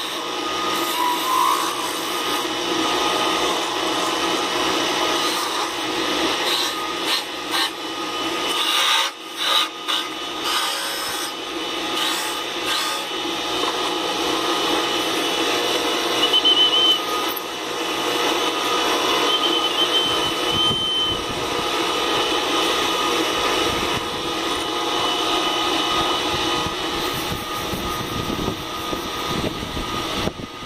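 Small wood lathe running steadily while a wooden quail call is turned on it: the motor hum under the scraping rasp of a cutting tool and sandpaper held against the spinning wood, with a few brief breaks in the cutting about a third of the way through.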